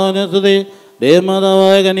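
A priest's male voice chanting the liturgy into a microphone, holding long steady notes; it breaks off briefly about half a second in, then slides up into another long held note about a second in.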